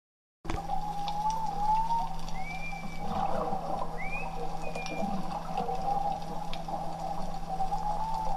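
Humpback whale song recording: a wavering, drawn-out call with two short rising calls above it, over a steady low hum and an even hiss with scattered clicks. It starts about half a second in.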